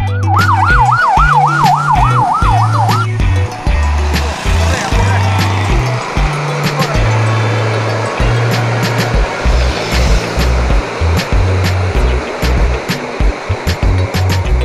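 Background music with a steady, repeating bass line throughout. Over it, for about the first three seconds, a vehicle siren yelps, rising and falling about three times a second, then stops.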